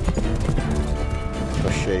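A horse galloping, its hooves knocking in quick succession, under a sustained film score. A man's voice calls out near the end.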